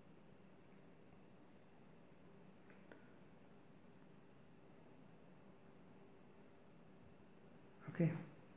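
Near silence: quiet room tone with a faint, steady, high-pitched cricket trill.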